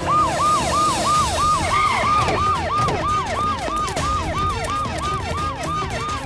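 Police vehicle siren sounding in a fast repeating yelp, each cycle a quick rise in pitch and a slower fall, about three a second. It starts suddenly, with faint background music underneath.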